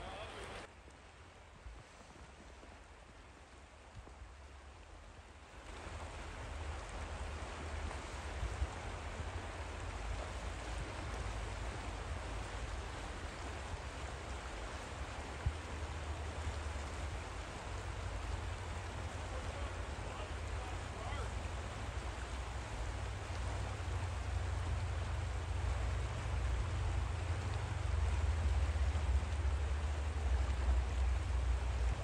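River water rushing steadily past rocks, with wind rumbling on the microphone. Both get louder about six seconds in and again near the end.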